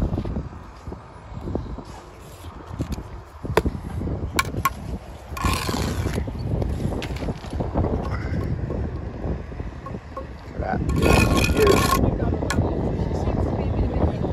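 Trowel and concrete-block work: a few sharp taps and two scrapes of about a second each, over a low wind rumble on the microphone.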